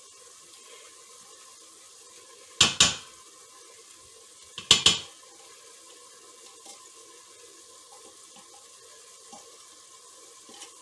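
A spatula and glass bowl knocking against the metal inner pot of an electric pressure cooker as food is scraped in: two loud clusters of clattering knocks, about two and a half and four and a half seconds in, each a quick double strike, with a few light taps later over a steady faint hiss.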